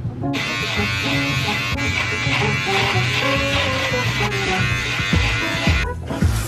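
Background music with a steady buzz from a small electric motor laid over it. The buzz starts about a third of a second in and cuts off just before the end.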